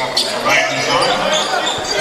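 Live basketball game sound in a large gym: a ball bouncing on the hardwood court, with indistinct voices of players and spectators.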